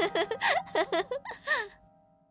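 A young man's voice laughing in a quick string of short 'ha' bursts that dies away in the second half, over a faint held music chord.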